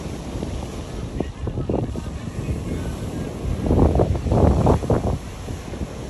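Wind buffeting a phone's microphone in uneven gusts, strongest a little past the middle, over the wash of surf on a beach.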